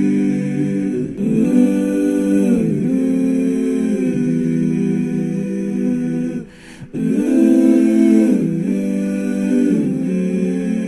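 Background film score of hummed, wordless vocal chords held and shifting every second or two, with a brief dip about six and a half seconds in.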